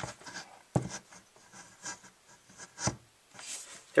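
Handling noise as a Simplex 4051 alarm horn is set in place by hand, not yet sounding: light rubbing and small clicks, with two sharper knocks, one about a second in and one near three seconds.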